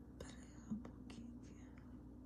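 Faint whispering: a few short, breathy syllables, with one brief low voiced sound just under a second in.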